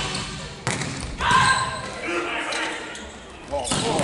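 Volleyball being struck in an echoing indoor arena: sharp hits about half a second in, just after a second in and near the end, with players' shouts and crowd voices between them.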